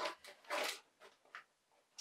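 Lego minifigure blind bags being handled and pulled out of their box: a few short crinkling rustles of the packaging, the largest about half a second in.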